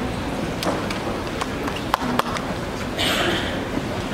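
Stage and hall noise between pieces in an auditorium: rustling and shuffling with a few sharp clicks and knocks, such as music stands, chairs or instruments being handled, and a brief hiss about three seconds in.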